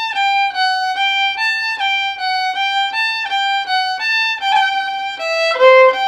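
Solo violin played slowly: short bowed notes in an even rhythm, stepping back and forth between neighbouring pitches in the huasteco fiddle style, dipping lower near the end.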